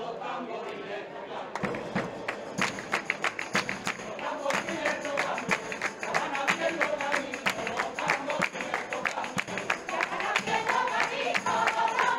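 A crowd singing a Rocío song in flamenco style over a fast, steady beat of percussion that comes in about a second and a half in.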